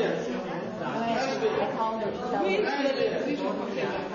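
Voices of several people talking at once, overlapping chatter.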